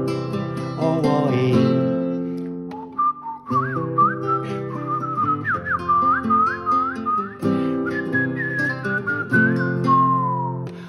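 Acoustic guitar strumming chords, joined about three seconds in by a man whistling a melody with quick upward slides in pitch, played between sung verses of a folk-style song.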